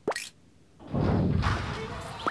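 A quick cartoon pop sound effect sweeping down in pitch, then, about a second in, a rush of noise that slowly eases off.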